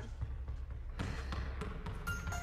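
A basketball bouncing, a few faint separate bounces with one clearer about a second in, over a steady low hum.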